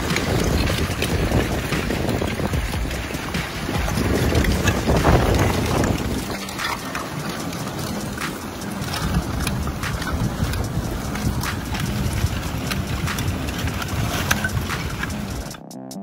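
Lake ice pushing ashore over a pebble beach: a continuous grinding and rustling of ice sheets, with many sharp clinks and cracks from breaking shards.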